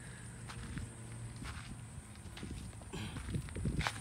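Footsteps on the ground: irregular light scuffs and steps, a few louder ones near the end.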